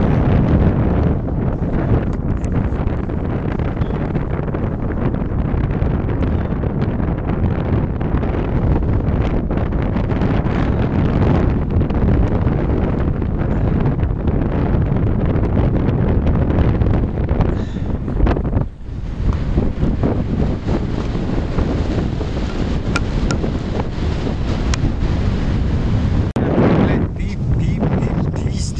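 Strong winter wind buffeting the camera microphone on open river ice: a loud, steady low rumble with one brief lull about two-thirds of the way through.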